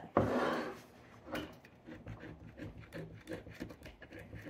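Knife blade scraping around the edge of a ceramic baking dish, working loose a slab of set sponge candy: a louder scrape just after the start, then faint, broken scratching.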